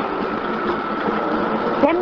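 Steady interior noise of a city bus cabin, the vehicle's running noise heard in a short gap in the recorded on-board announcement. The announcer's voice resumes near the end.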